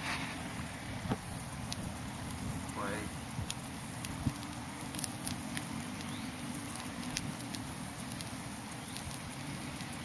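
A small fire lit as the ignition for an acetylene-oxygen plastic-bag bomb, burning with scattered crackles and pops over a steady background hiss.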